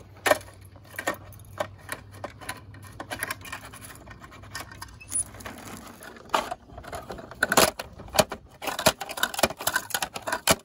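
Plastic clicking and clattering of a toy MAN garbage truck's bin-lift mechanism being worked by hand, with small plastic bins knocking against it. A run of irregular sharp clicks, loudest just after the start and again about seven to eight seconds in.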